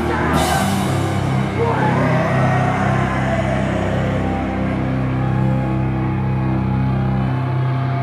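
Live crust punk band with distorted guitars and bass: a cymbal crash just after the start, then a long held chord left ringing.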